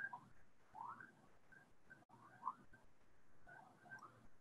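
Near silence: quiet room tone with a few faint, short chirp-like tones.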